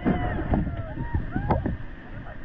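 An inflatable raft running a river rapid, heard from an action camera on board: rushing water, splashes and knocks against the raft, wind on the microphone, and voices calling out.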